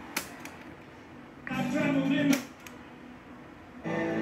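Sharp clicks from a Sony ST-333S tuner as it switches between preset stations, with a short snatch of a broadcast voice from its speaker about halfway through. Music from the newly selected station starts near the end.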